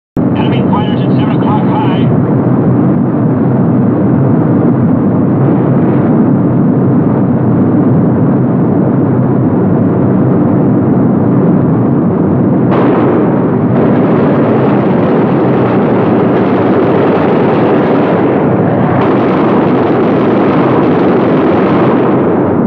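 Steady, loud drone of a B-17 Flying Fortress's four Wright Cyclone radial engines on an old, band-limited film soundtrack. The drone turns brighter and harsher about 13 seconds in.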